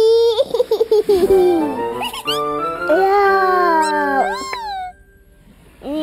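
A baby's high voice vocalizing over playful children's music with stepped notes. A quick rising whistle-like sweep comes about four seconds in, and the sound stops abruptly about five seconds in.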